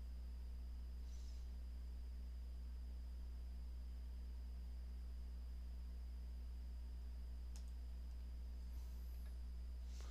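Steady low electrical hum with a faint high whine above it, and a single faint click about three-quarters of the way through.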